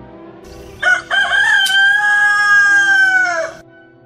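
A rooster crowing once, starting about a second in: a short first note, then a long held note that drops away at the end, nearly three seconds in all and loud.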